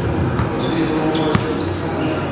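A basketball being dribbled on a gym floor: a few sharp bounces, the loudest a little past the middle.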